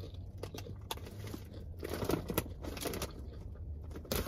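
Chewing with crisp crunches, a string of short bites into caramel-and-chocolate-coated popcorn, over a low steady hum.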